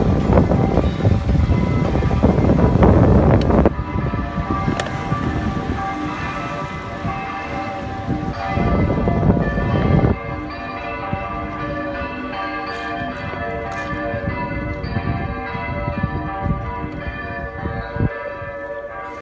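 Church bells pealing, several bells of different pitches ringing over and over, with wind rumble on the microphone in the first few seconds and again briefly about nine seconds in.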